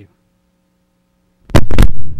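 A faint steady electrical hum, then about one and a half seconds in a sudden, very loud burst of noise right at the microphone, overloading the sound for about half a second.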